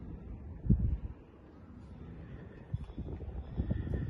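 Low, uneven rumble of wind buffeting the microphone, with a few soft thumps about a second in and again near the end.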